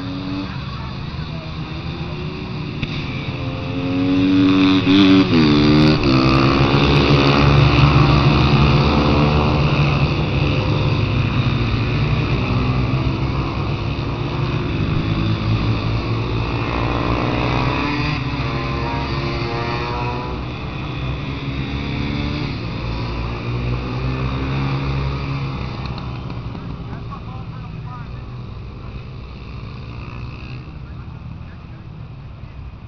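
Mini GP racing motorcycles passing on the track, their engines revving with pitch climbing and falling through gear changes. The loudest pass comes about four to nine seconds in, another around the middle, and the engines fade toward the end.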